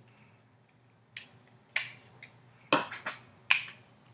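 About six sharp clicks or taps at uneven intervals, starting a little over a second in, over a faint steady low hum.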